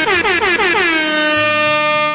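Air horn sound effect: one long, loud blast that drops in pitch at its start and then holds steady, played over background music.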